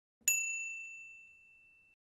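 A single bright bell ding about a quarter second in, ringing on and fading slowly until near the end: the notification-bell sound effect of an animated subscribe button.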